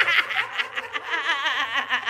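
A person laughing in a high-pitched, quickly pulsing giggle that breaks off at the very end.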